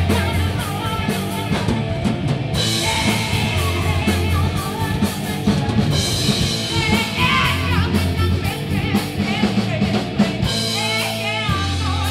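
Live alt-metal band playing loud: a woman singing into a microphone over electric guitar, heavy low notes and a drum kit.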